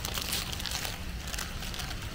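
Faint crinkling of a chip bag being handled, over a steady low rumble.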